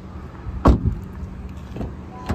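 A 2024 Honda Accord's rear passenger door being shut: one heavy thump about two-thirds of a second in, then a lighter click near the end.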